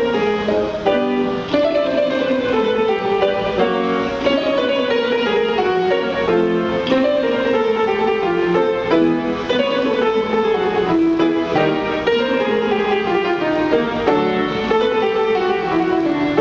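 Tenor voice singing quick stepwise scale runs up and down on a rolled tongue trill, as a bel canto vocal exercise, with piano played alongside.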